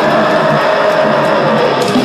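Live metal band playing loud, with distorted electric guitar holding a chord.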